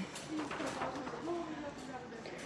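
Faint voices in the background, a few short murmured fragments over a low, steady store hubbub.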